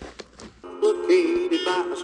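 A vinyl record being test-played on an ION portable turntable: after a few faint clicks, a song with a sung melody over steady instrumental tones starts suddenly about half a second in. It sounds like 1960s Nashville country.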